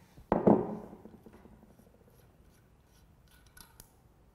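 Shimano HG cassette lock ring giving one sharp metallic crack about a third of a second in as it breaks loose under the lock ring tool. Faint clicks and rubbing follow near the end as the loosened lock ring is handled off the cassette.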